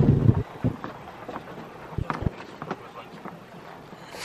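A vehicle rolling slowly over a rough dirt track, heard from inside the cab with the window open. A loud low rumble comes at the start, then a few scattered knocks and thumps from the ride.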